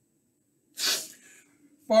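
A man's single short, sharp burst of breath, about a second in, out of near silence.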